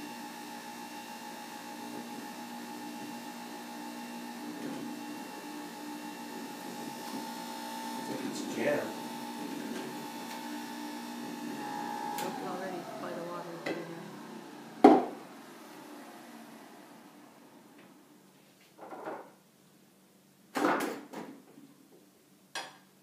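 Electric juicer motor running steadily as kale is pushed down its feed chute, then switched off about twelve seconds in and winding down to a stop. A sharp knock follows, then a few lighter knocks and clatters of the juicer's plastic parts being handled.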